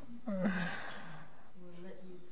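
A person's breathy sigh, starting with a brief voiced sound and trailing off as exhaled air, followed by faint murmured voices near the end.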